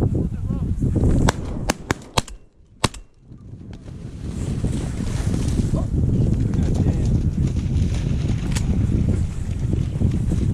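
A quick volley of shotgun shots, about five in a second and a half, fired at ducks flying in. One more shot comes near the end. Wind and handling rumble on the microphone fill the rest.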